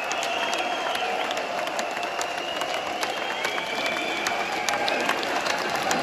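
A large concert crowd applauding and cheering, with dense clapping and long held shouts from the audience.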